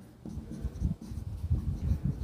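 Marker pen writing on a whiteboard, a quick run of short, irregular strokes that starts a moment in.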